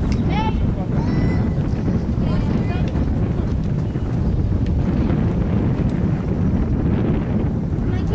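Wind buffeting the microphone, a steady low rumble throughout. Girls' high voices call out from the field a few times in the first three seconds.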